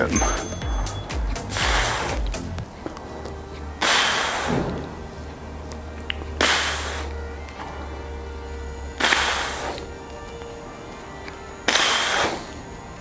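A man exhaling forcefully, five short breaths about two and a half seconds apart, one with each overhead tricep press, over quiet background music.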